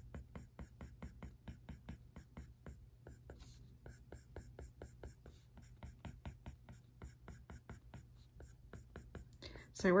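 Apple Pencil tip tapping and scratching on the iPad Pro's glass screen in quick, short back-and-forth strokes, a steady run of about five or six ticks a second.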